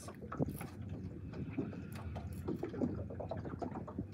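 Water lapping and slapping against a boat hull with wind noise, and small scattered knocks and clicks as an angler fights a hooked fish.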